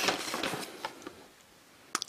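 A hand rummaging through a plastic storage tub of cardboard boxes and plastic blister packs of HO model train parts: packaging rustling and clattering in quick light clicks that die away after about a second, then one sharp click near the end.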